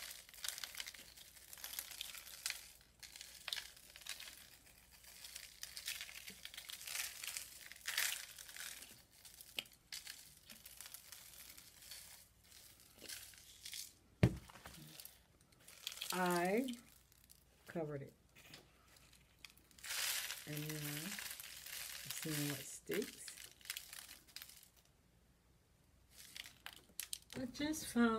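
Crushed glass being shaken from a glass jar onto a glue-coated surface and into a cardboard box: a dense, crackling rattle through the first half. A single sharp knock about halfway through, then a few brief murmured words and handling noises.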